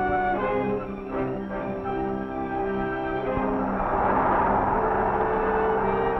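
Orchestral film score with strings and brass holding sustained chords; a little past halfway a rushing noise swells up over the music.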